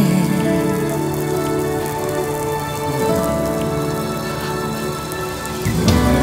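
Steady hiss of falling rain over soft, sustained music chords.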